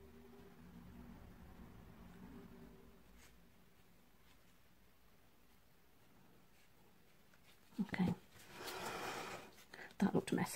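Faint room tone, then near the end a short voiced sound from a woman followed by a breathy exhale about a second long.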